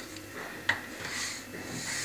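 Faint rubbing and handling noise with one sharp click about two-thirds of a second in, as a phone camera moves over a gas stove's burners.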